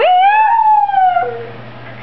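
West Highland white terrier howling: one long howl that rises at the start, then slowly falls and trails off about a second and a half in.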